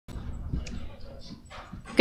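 Faint room noise: a low rumble with a few soft rustles and faint, indistinct voices.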